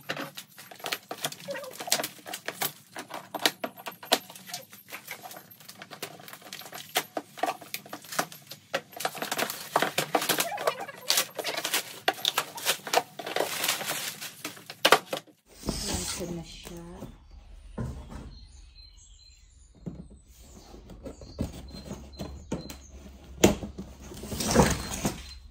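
Cardboard boxes and their plastic wrapping being handled and pulled open, with dense crinkling, scraping and knocks. After about fifteen seconds the sound changes suddenly to sparser knocks over a low hum.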